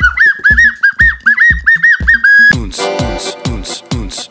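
A small toy flute plays a high, swooping Middle-Eastern-style tune over a thumping dance beat; about two and a half seconds in, the full electronic dance track comes in with hi-hats and synth chords.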